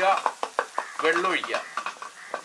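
Wooden spatula stirring onion-tomato masala in a frying wok, with a run of quick clicks and scrapes of the spatula against the pan over the frying.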